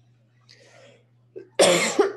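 A woman coughing into her fist: after a faint breath, a loud cough breaks out about one and a half seconds in and carries on past the end.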